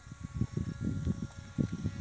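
Wind buffeting the phone's microphone in uneven low gusts, with a faint steady hum underneath.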